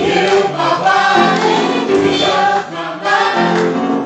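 A live worship band playing a song: several voices singing together into microphones over piano and drums.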